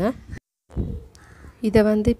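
A woman's speaking voice that trails off with a rising tone, then breaks into a brief moment of dead silence from an edit. Her voice resumes near the end.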